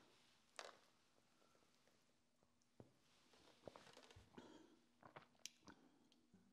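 Near silence, with a few faint, short clicks from a plastic shaker bottle being handled.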